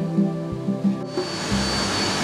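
Soft guitar music for about the first second, then a sudden cut to the loud, steady noise of olive-mill machinery: the crushers milling olives, with a thin high whine above the noise.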